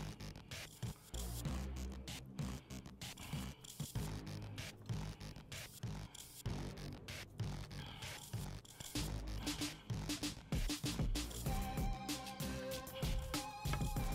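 Background music with a steady beat; a held melody line comes in about twelve seconds in.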